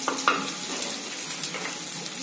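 Chopped onions sizzling steadily as they fry in hot ghee in a clay pot, stirred with a wooden spoon.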